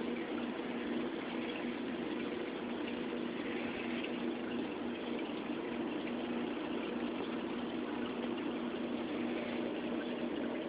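Reef aquarium's circulation running: steady bubbling and moving water with a low, even pump hum underneath.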